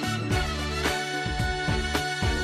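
Theme music for a TV programme's opening titles: sustained instrumental tones over a bass line, with a steady percussive beat.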